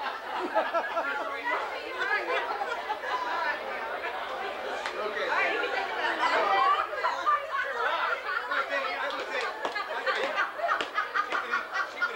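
Several people talking over one another around a dinner table, with bits of laughter mixed in.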